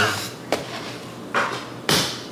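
A short voice-like cry with a gliding pitch right at the start, then a click, a short noisy burst and a sharp knock-like sound near the end.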